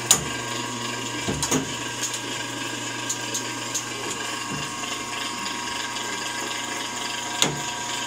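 Hardinge DV-59 turret lathe running with a steady hum while its metal levers and turret are worked by hand, giving sharp clicks and clunks: a loud one right at the start, a quick cluster about a second and a half in, a few lighter ones after, and another sharp one near the end.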